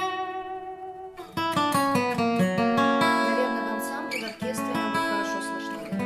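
Steel-string acoustic guitar with a modern body (between a dreadnought and a folk shape) played fingerstyle. A chord rings and fades for about a second, then plucked notes and fuller chords follow, each left ringing with long sustain.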